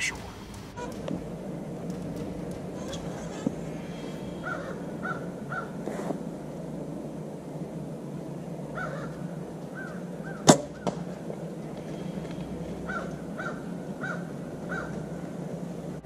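A single sharp shot from a Bear Status compound bow about ten seconds in, the string's release and the arrow's flight at a doe 25 yards off, over quiet outdoor ambience. Short chirping bird calls come in little runs of three or four.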